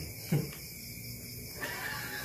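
A man's brief vocal sound, once about a third of a second in, falling in pitch, over low room murmur.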